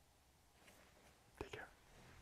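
Near silence: room tone, with one short, soft human vocal sound about one and a half seconds in.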